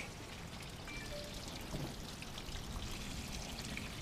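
Garden-hose water pouring and trickling out through a UTV's air intake as it is back-flushed to wash out sand and debris after a flooding; a faint, steady flow.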